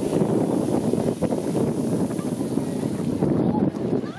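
Strokkur geyser just after an eruption: a steady rushing, splashing noise as the column of water and steam falls back, mixed with wind buffeting the microphone.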